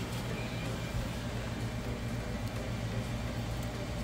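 A kitchen fan running with a steady low hum and an even hiss.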